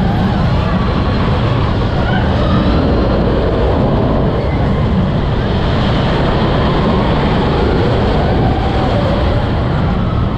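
Mine-train roller coaster running fast along its track: a loud, steady rumble of the cars and wheels, with air rushing past the onboard camera.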